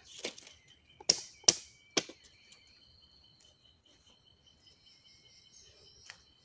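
Outdoor bush ambience: three sharp crackles between one and two seconds in, the loudest about a second and a half in, then only a faint, steady, high-pitched insect drone.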